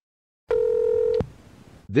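A short electronic beep: a steady mid-pitched tone over a hiss, starting about half a second in, lasting under a second and cut off by a click, with faint hiss after it.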